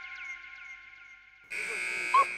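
Edited-in TV sound effects: a quick run of falling pings over a held chime that fades away, then about one and a half seconds in a loud buzzer-like tone starts suddenly and holds.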